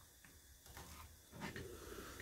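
Kitchen knife slicing spring onions on a plastic chopping board: a few faint taps of the blade striking the board.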